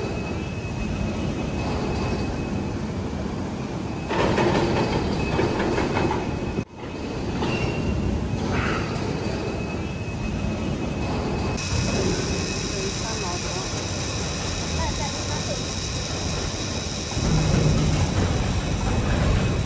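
Large four-point contact ball slewing bearing being turned by hand, its steel balls rolling in the raceway with a steady rolling noise. The noise cuts out briefly about seven seconds in.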